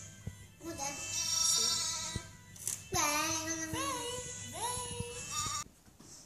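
A young lamb bleating in long, wavering calls, with music playing in the background.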